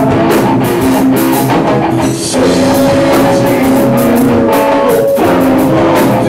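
Instrumental rock section by a guitar-and-drums band: electric guitars and a drum kit playing, with a brief drop just after two seconds in and then a long held note.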